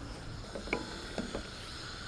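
Wooden spoon stirring chickpeas in a stainless-steel pan, with a few faint knocks of the spoon against the pan.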